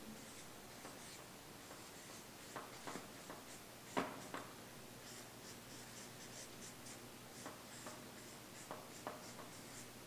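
Marker pen writing on a flip-chart pad: a faint run of short strokes, with one sharp tap about four seconds in.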